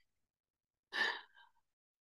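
A woman's single short breath about a second in, heard in an otherwise silent pause between spoken phrases.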